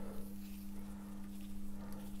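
Faint clicks and light knocks of a hand tool turning the 4 mm hex drive on the back of a Mini valvetronic motor, its worm gear winding the motor in toward the cylinder head, over a steady low hum.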